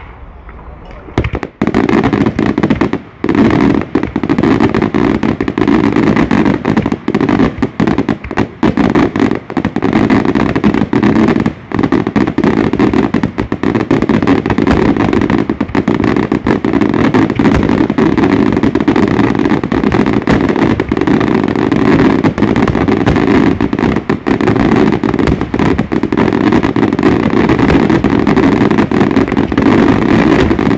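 Daylight fireworks barrage: salutes and shells going off in a dense, nonstop stream of loud bangs, so rapid that they merge together. It starts about a second and a half in.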